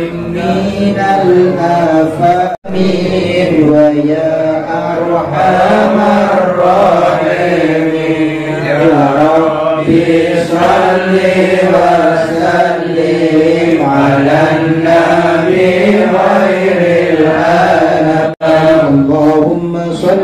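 A group of men chanting Islamic shalawat together in Arabic, in a slow, wavering melody, with one voice on a microphone. The chant breaks off for an instant twice, once early and once near the end.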